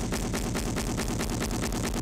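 Background music with a fast, even run of percussive beats, many a second, holding a steady level.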